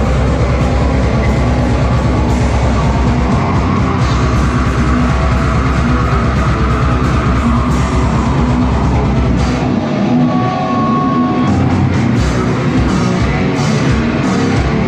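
Death metal band playing live and loud: distorted electric guitars, bass and drum kit. About ten seconds in, the low end drops away for a couple of seconds while a single high note is held.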